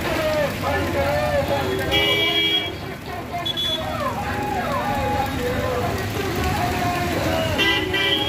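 Street traffic passing on a wet road, with vehicle horns tooting: one horn about two seconds in, a short toot soon after and another near the end, over a background of many people's voices.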